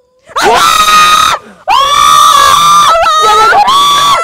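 A woman screaming in fright: two long, high, sustained shrieks, then shorter overlapping screams near the end.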